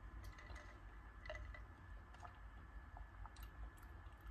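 Near silence: room tone with a low hum and a few faint, scattered clicks.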